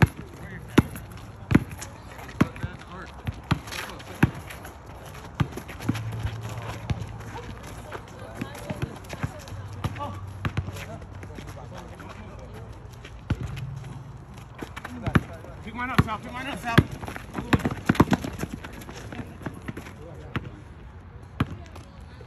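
A basketball bouncing on an outdoor asphalt court: sharp single bounces at uneven intervals, with players' voices calling out in the background, busiest a little past the middle.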